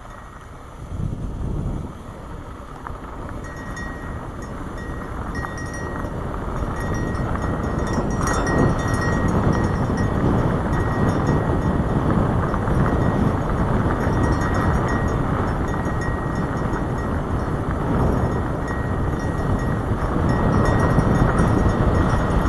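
Wind rushing over a helmet-mounted microphone, mixed with the rumble and crunch of bicycle tyres rolling over a loose dirt trail on a fast downhill. It builds louder over the first several seconds as speed rises, then holds steady.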